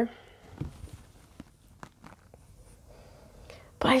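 Quiet room tone with a few faint, sharp clicks scattered through the pause.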